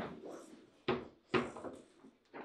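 Foosball play: sharp hard knocks of the ball being struck by the rod figures and hitting the table, two loud ones about a second in and half a second apart.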